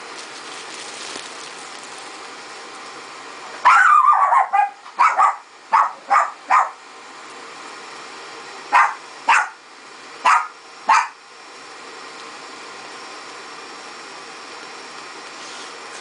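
A dog barks about nine times in two runs, starting about four seconds in and stopping about eleven seconds in. Under the barks, the fan of an Arizer Q vaporizer runs with a steady hiss as it blows vapor into a full bag.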